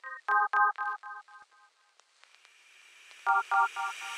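A run of short electronic beeps opens the song: about seven evenly spaced tones that fade out over a second and a half. A faint rising hiss follows, then three more beeps near the end.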